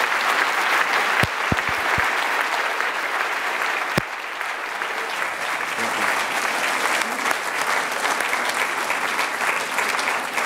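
An audience applauding steadily. The clapping is a little louder over the first few seconds, and a few sharp thumps cut through it early on and again about four seconds in.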